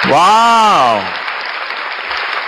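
Applause with one drawn-out vocal cheer in the first second that rises and then falls in pitch.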